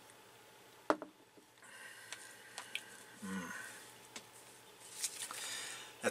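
Quiet handling sounds from a person at a table: a sharp knock about a second in, then soft rustling and mouth sounds, with a brief low hum near the middle.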